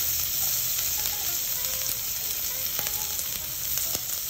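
Chopped green bell peppers sizzling in hot oil in a wok with dried red chillies, garlic, ginger and Sichuan peppercorns: a steady high hiss with a few faint crackles.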